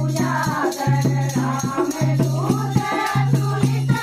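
A group of women singing a Hindu devotional kirtan together in unison. Steady hand clapping keeps a quick beat, and a low held note comes and goes under the voices.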